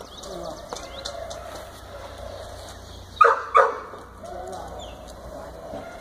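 A dog barking twice in quick succession about three seconds in, two short, loud barks.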